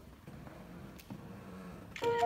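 Quiet hall room tone with a small click about a second in, just before a grand piano starts playing.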